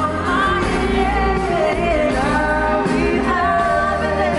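Live pop vocal duet, a woman and a man singing with band accompaniment: long, gliding sung notes over a steady bass.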